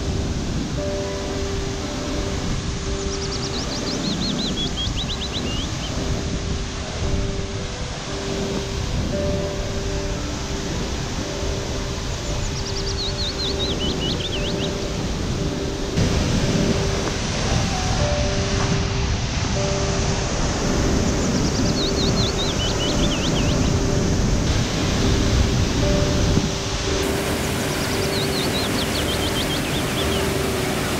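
Rushing water of a tiered waterfall pouring into rock pools, a steady dense roar, with gentle background music of held notes over it. A short high descending trill comes back four times, about every nine seconds.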